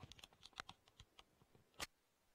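Computer keyboard typing: a quick run of about a dozen keystrokes, with one louder key strike near the end.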